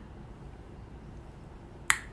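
Quiet room tone, with one sharp click near the end.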